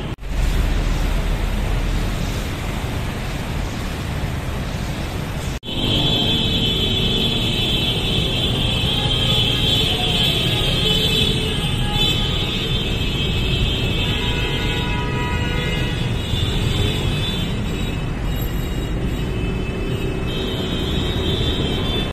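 Busy road traffic noise with vehicle engines running close by, steady throughout, broken by a brief drop-out about five and a half seconds in.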